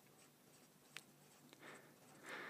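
Faint felt-tip pen strokes on notepad paper as small circles are drawn, with a light tick about a second in; otherwise near silence.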